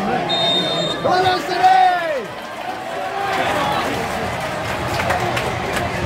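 A referee's whistle blows once, a steady high tone lasting well under a second, signalling the kick-off. It is followed by a loud, long shout that falls in pitch, over the steady chatter and shouting of a football crowd.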